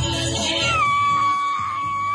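Song accompanying a Samoan siva dance, then a single long, high-pitched cry held steady for about a second and a half, rising at its start and dropping away at the end, over the fading music.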